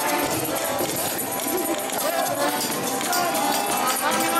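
Small button accordion playing a tune amid loud crowd chatter, with repeated knocks of dancing feet on a hard floor.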